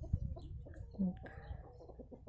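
Faint clucking of domestic hens in the background, with a brief low vocal sound about a second in.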